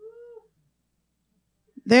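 A single brief, high-pitched voice-like sound about half a second long with a slight rise and fall in pitch, followed by a pause. A woman's speech starts again near the end.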